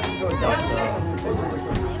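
A man talking, with other voices chattering and music playing in the background.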